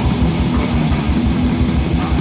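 Heavy metal band recording of drums, bass guitar and distorted electric guitar playing a fast, pounding riff, with no vocals. It is a lo-fi demo recorded on an 8-track soundboard.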